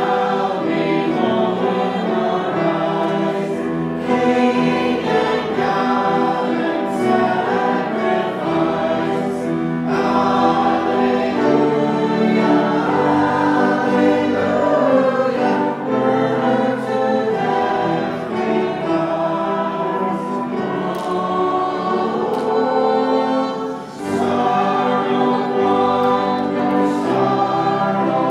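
A congregation singing a hymn, led by a song leader, accompanied by piano and violin. The singing is steady with a short break between phrases near the end.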